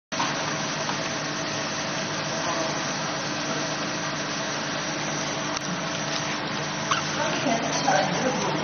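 Laser marking machine running with a steady hum and noise, most likely its cooling fans, while it marks an eyeglass temple. A few light knocks come near the end.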